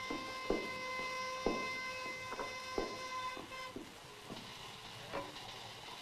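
Glass bottles and glasses clinking and knocking as they are handled behind a bar, about seven irregular clinks, over a steady high tone that stops about three and a half seconds in.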